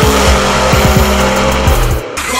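Drag-race cars accelerating hard at full throttle down the strip, mixed with bass-heavy music that has a steady beat.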